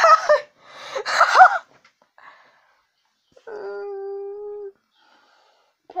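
Two short high-pitched whimpering cries with sliding pitch, then, about three and a half seconds in, a single held whine lasting about a second.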